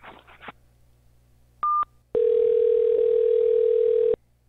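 Phone line on an outgoing call: a short high beep, then about half a second later one steady two-second ringback tone, the line ringing at the far end before it is answered.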